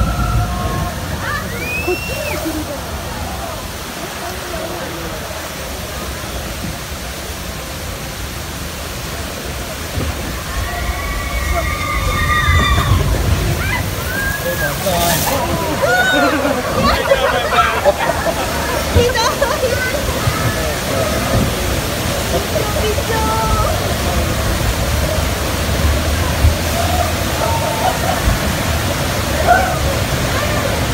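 Water rushing and sloshing along a log flume ride's channel, a steady wash of noise that grows louder about twelve seconds in. People's voices are heard over it now and then.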